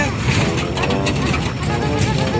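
Car driving slowly over a rough, potholed dirt road, heard from inside the cabin: a steady low rumble with scattered knocks and rattles from the bumps.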